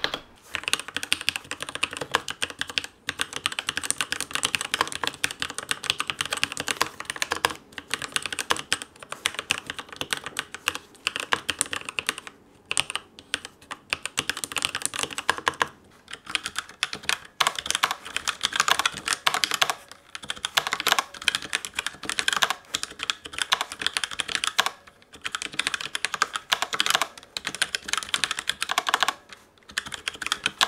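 Typing on mechanical keyboards: first a Keychron K8 with red linear switches, then a Razer BlackWidow Lite with orange switches damped by O-rings. It is a fast, continuous patter of keystrokes broken by a few short pauses.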